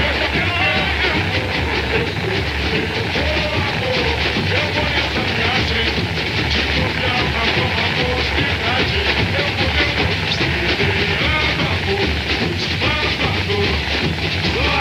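Samba-school music: a bateria's dense, driving drums and percussion with voices singing along.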